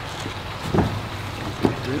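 EPDM rubber pond liner being handled and pushed into a skimmer opening: soft rubbing and scuffing of rubber against fabric, with a couple of short knocks, one a little under a second in and one near the end.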